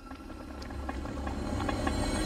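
A low rumbling swell from a film soundtrack, growing steadily louder.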